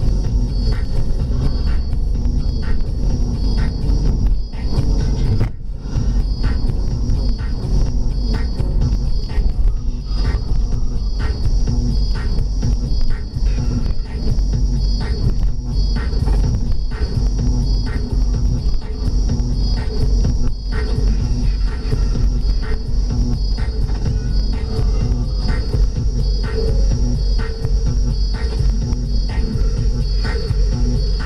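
Electronic dance music with a steady beat playing from the car radio, heard inside the cabin over the low rumble of the moving car.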